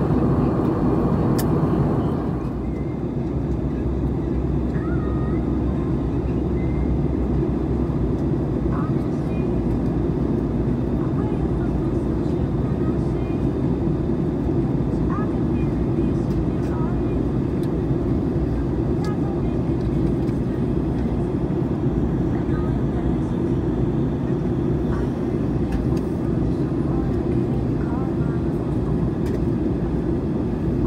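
Steady jet airliner cabin noise heard from a window seat: the low rumble of the engines and the airflow over the fuselage, easing slightly about two seconds in.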